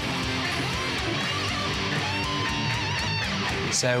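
Electric guitar playing a metal-style pentatonic lead line, with one held note shaken with wide vibrato for about a second near the middle.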